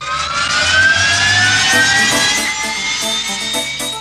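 A radio station ident's jet-like whoosh sound effect that starts suddenly, a loud hiss with a slowly rising pitch, with musical notes coming in under it in the second half.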